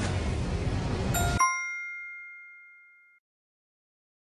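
A steady rushing noise cuts off abruptly about a second and a half in, as a bright chime ding rings out and fades away over about two seconds. It is a quiz sound effect marking the end of the countdown and the reveal of the correct answer.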